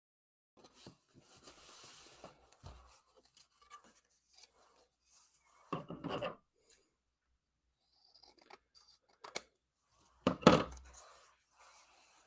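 Cardstock and paper rustling as a card is handled on a craft table, with short knocks from a pair of scissors being picked up and put down; the loudest is a sharp clatter just after ten seconds.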